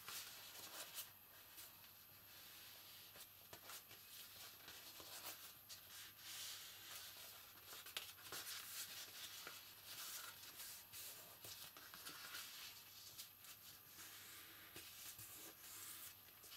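Faint rustling and rubbing of thin painted card as it is handled and pinched along its fold lines, with scattered small clicks.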